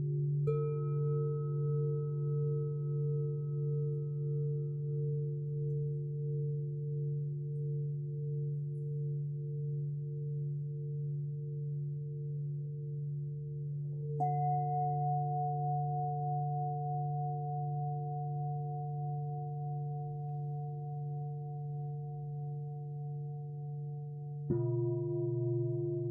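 Large Japanese standing bells (bowl-shaped temple bells) ringing on with a deep, slowly pulsing hum. Smaller bells are struck twice, about half a second in and about 14 seconds in, each strike ringing out in higher tones over the low hum and fading slowly.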